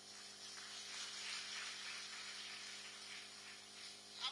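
Audience applauding, a soft even patter that swells in the first second and slowly dies away.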